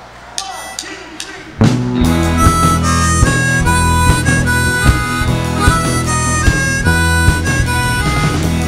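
A few faint clicks, then about one and a half seconds in a live rock band comes in loud: drums, bass and guitar under a lead melody of long held notes.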